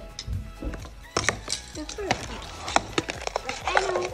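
Hard plastic Speed Stacks sport-stacking cups clacking and knocking against each other as they are pulled off a stack by hand: a run of sharp clicks starting about a second in.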